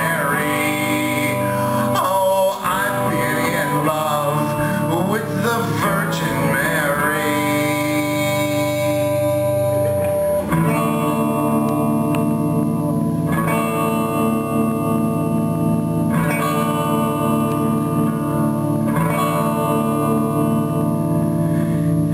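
Live electric guitar instrumental break in a rock song: a lead line that bends and wavers in pitch for about the first ten seconds, then sustained chords over a steady repeating pulse.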